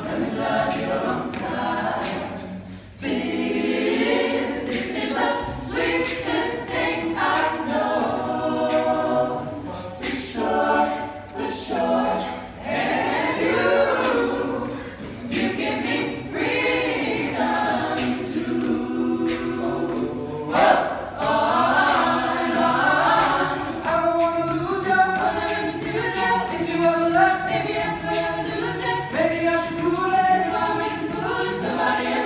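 Mixed-voice a cappella group of men and women singing a pop song in layered parts, with no instruments. The voices break off briefly about three seconds in, then carry on.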